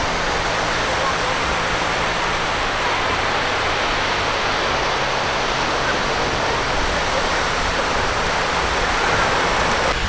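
Steady, even wash of surf breaking on a sandy beach, mixed with wind noise on the microphone.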